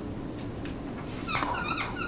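Marker squeaking on a whiteboard: a run of short, high-pitched squeaks starting a little past halfway, over a low steady room hum.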